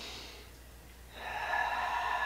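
A woman breathing audibly with the effort of a shoulder exercise: a short breath at the start, then a longer, louder breath about a second in.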